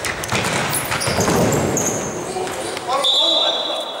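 Futsal play in a sports hall: the ball being kicked and bouncing, shoes squeaking on the court and players shouting. Near the end comes one steady referee's whistle blast of about a second, as a player goes down.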